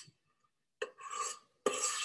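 Metal ice cream scoop scraping through soft mousse against the side of a stainless steel mixing bowl: a brief click at the start, then two short scrapes, one about a second in and a stronger one near the end.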